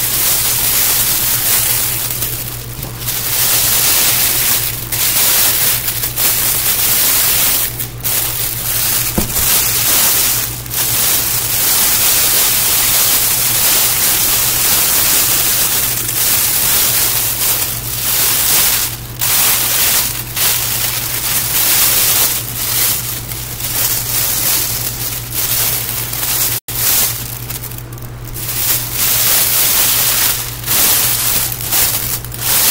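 Clear plastic wrap crinkling and rustling close to the microphone as it is handled and gathered around a gift, in uneven stretches with short pauses. A steady low hum runs underneath, and the sound cuts out for an instant near the end.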